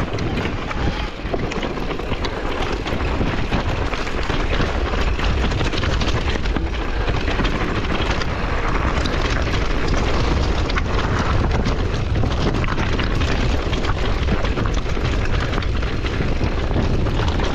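Mountain bike rolling down a loose, rocky trail, its tyres crunching and clattering over stones in a dense run of clicks. Over this there is a constant low rumble of wind on the microphone and rattling vibration. It gets a little louder over the first few seconds.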